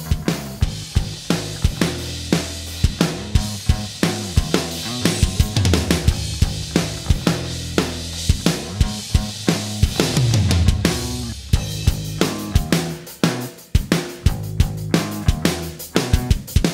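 Mix playback of a band's drum kit and bass guitar sharing one compressed bus: kick, snare, hi-hat and cymbals over a bass line. The drums run through an Aphex Vintage Aural Exciter plugin being dialed up to bring back their presence, which the bass had masked.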